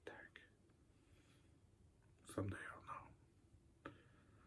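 Near silence, room tone, broken by a few faint words spoken under the breath about halfway through and a soft click near the end.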